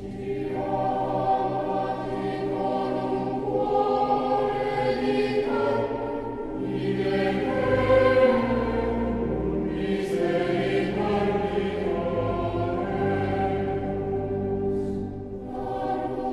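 Choral music: a choir singing long held chords that change every few seconds.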